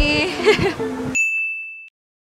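Background music fading out, then about a second in a single high ding sound effect that rings steadily for under a second and cuts off.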